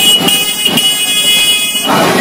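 A shrill, high-pitched signal sounds twice over a crowd, a short blast and then a longer one that cuts off near the end.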